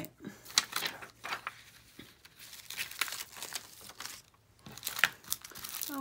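Thin clear plastic crinkling and crackling in irregular bursts as clear acrylic stamp sheets and their cellophane packaging are handled.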